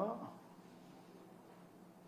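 A man's voice gives one short syllable with a falling pitch at the very start, then only quiet room tone with a faint steady hum.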